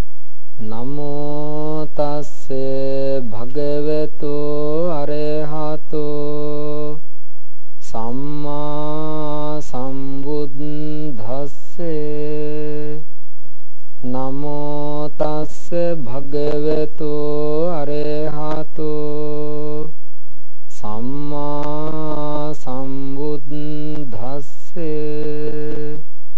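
A man's voice chanting Pali Buddhist verses (pirith) in a slow, melodic, drawn-out recitation, in long phrases of about six seconds with short breaths between.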